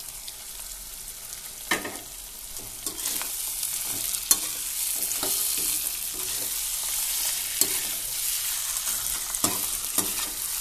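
Whole fish frying in spice paste in a metal kadhai, sizzling. A perforated steel skimmer scrapes and knocks against the pan as the fish are stirred. The sizzle grows louder about three seconds in.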